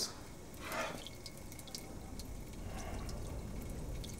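Faint water dripping in a tiled washroom, with a brief soft hiss just under a second in.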